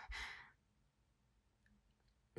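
A woman's short, breathy sigh of about half a second.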